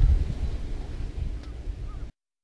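Wind buffeting an outdoor microphone: an uneven low rumble with a faint hiss above it, cutting off suddenly at the end.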